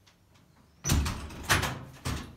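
A door being handled as someone walks through it: a sudden loud clunk just under a second in, then a second knock about half a second later.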